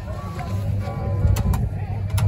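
Faint background music and distant voices over a steady low rumble, with two light clicks about halfway through.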